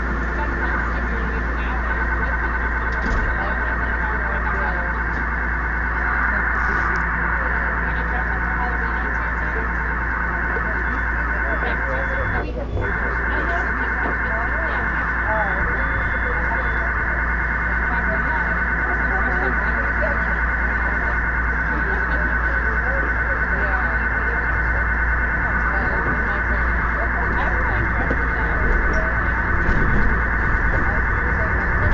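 A subway car's passenger announcement speakers playing a continuous buzzing, warbling data signal: the car's telemetry data line has been fed onto the customer audio line. It is a dense cluster of steady tones with a brief dip about twelve seconds in, over the low rumble of the moving train.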